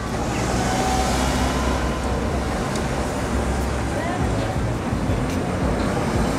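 Street traffic noise at a busy taxi stand: a steady wash of vehicle engines with people talking in the background.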